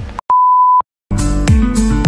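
A single steady high beep lasting about half a second, edited in with dead silence on either side. About a second in, music starts: a beat with strummed acoustic guitar.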